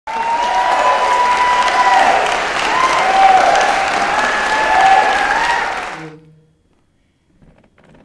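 Theatre audience applauding, with a few raised voices calling out over the clapping; it fades out quickly about six seconds in.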